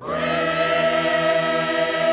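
A choir singing an arrangement of a Caspian Coast folk song. The voices come in together loudly right at the start and hold a long sustained chord.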